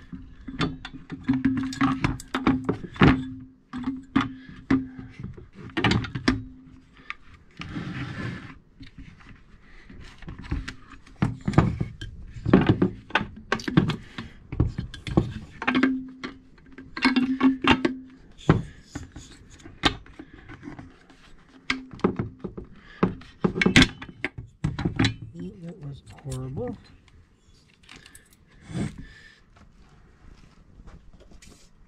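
Plastic chainsaw fuel-tank and rear-handle housing being fitted onto the crankcase: a string of irregular sharp knocks, clicks and clatters of plastic and metal parts, with a brief scraping noise partway through.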